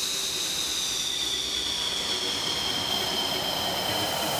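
JF-17 Thunder's single Klimov RD-93 turbofan running at taxi power as the jet rolls past and away. It makes a steady high whine over a rushing hiss, and the whine slowly drops a little in pitch.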